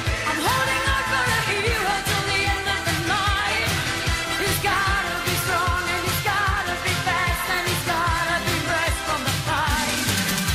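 Background music: a song with a singing voice over a steady drum beat.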